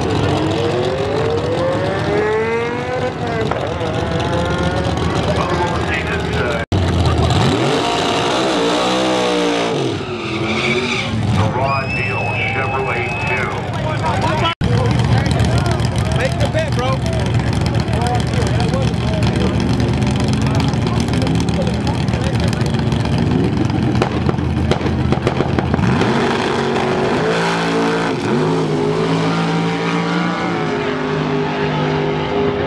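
Drag-race Chevelle's engine revving hard with tyre squeal during a burnout, then running steadily while staging, and launching near the end with rapidly rising revs. The sound breaks off sharply twice, at about 7 and 15 seconds.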